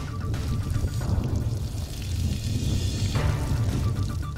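Water spraying from an overhead decontamination shower onto a chemical-resistant suit: a steady rush of spray, with a low music bed underneath.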